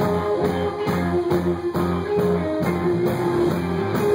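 Indie rock band playing live: electric guitars over a drum kit keeping a steady beat, in an instrumental passage with no singing.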